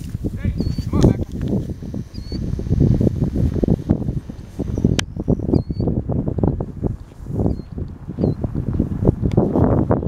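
Footsteps and rustling through tall dry grass in irregular bursts, with several short high bird chirps and a single sharp click about five seconds in.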